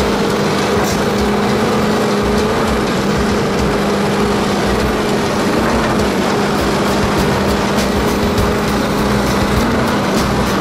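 Volvo EC210B LC excavator working a Xcentric Ripper XR20 into lava stone: a steady, loud machine hum from the engine and the ripper's hydraulic vibration, with scattered sharp clicks of stone cracking that come more often in the second half.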